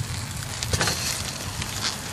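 Pork neck bones and onions sizzling in a hot carbon steel wok, cooked to help season the new wok: a steady hiss with a brief louder crackle about three-quarters of a second in and another near the end.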